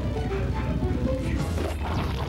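Horror-film soundtrack: music with crashing sound effects over a steady low rumble.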